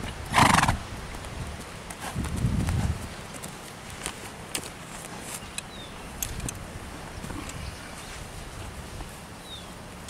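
Criollo horse ridden at a trot over grass and brought to a halt, with soft hoofbeats and one loud, short, noisy blow from the horse about half a second in. Light clicks of tack follow as the rider dismounts.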